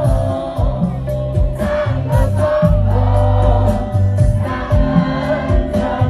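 Live band music with a steady beat: a male lead singer and many crowd voices singing along over bass and drums, as heard from within the audience.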